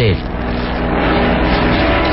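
Steady airplane engine drone, a radio-drama sound effect, holding one pitch without change.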